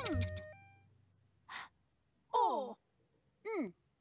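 Cartoon character voices after the music cuts off: a short breathy gasp, then two brief sighing 'oh' sounds, each falling in pitch.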